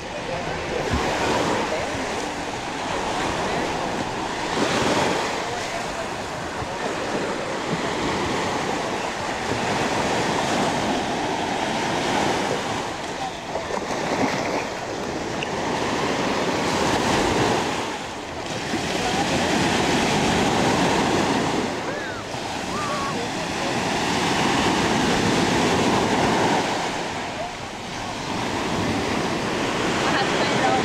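Small Gulf surf breaking and washing up onto a sandy beach, the rush swelling and easing every few seconds, with beachgoers' voices in the background.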